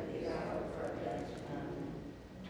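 Speech only: a few voices reciting a prayer aloud together, quieter than the leader's voice, trailing off near the end.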